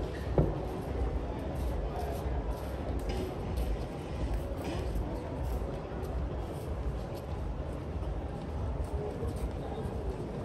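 Pedestrian-street ambience: faint voices of passers-by over a steady low rumble, with a single sharp thump about half a second in.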